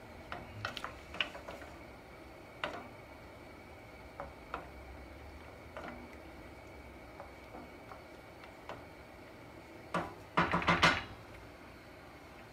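Wooden spoon stirring thick tomato sauce in a stainless steel saucepan, with scattered light knocks of the spoon against the pan. About ten seconds in comes a quick run of louder knocks.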